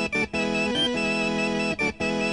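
Opening of a garage-rock song: held electric organ chords, cut off briefly twice, about a quarter second in and near the end.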